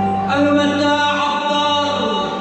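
A man singing into a microphone, amplified through the hall's speakers, holding long notes over a steady keyboard accompaniment; the voice comes in about a third of a second in.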